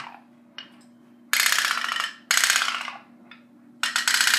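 Candle-powered pop-pop (putt-putt) toy boat's engine: fast, even popping that comes in spurts of about a second with quiet gaps between. It is sputtering as the candle runs out.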